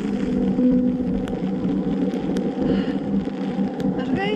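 Wind rushing over the microphone in the rain, a steady rumble with a few sharp ticks scattered through it.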